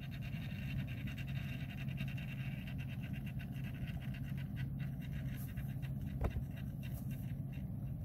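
Small electric motor of a rotating display turntable running, a steady low hum with a faint whir, with one brief tick about six seconds in.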